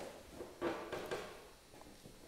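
Quiet room tone of a hall in a pause between spoken sentences, with a faint soft sound about half a second in.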